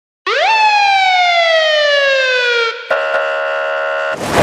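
An electronic siren-like tone in a DJ mix intro: it sweeps up quickly, then glides slowly down for about two seconds. Next comes a short click and a steady held chord.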